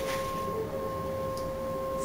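Background music: two steady held notes an octave apart, sustained through the whole stretch.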